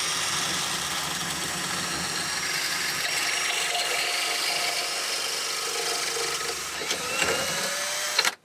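Cordless drill running at full speed, spinning a wooden dowel through the cutting hole of a dowel-making jig: a steady motor whine over the rough scraping of wood being cut. The jig's blade is tearing chunks out of the wood rather than turning a clean dowel.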